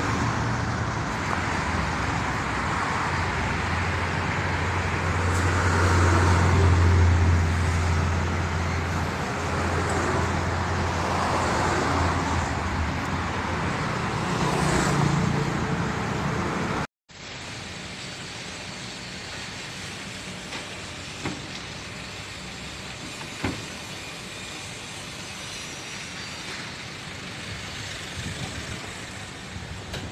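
Road traffic beside a busy street, with a low engine rumble swelling and fading as a heavy vehicle passes. About halfway through the sound cuts off abruptly and is replaced by quieter, steadier background noise with a couple of short knocks.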